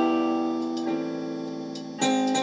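Piano playing slow sustained chords: a chord struck just before, left ringing and fading, and the next chord coming in about a second in.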